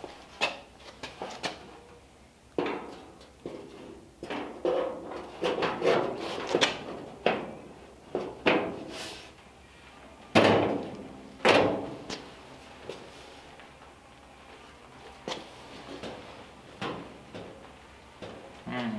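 Steel Model A door and its new reproduction skin being worked into the hinges and door opening by hand: a run of irregular sheet-metal clanks, knocks and scrapes. The two loudest knocks come about a second apart just past halfway, and there are a few lighter ticks near the end.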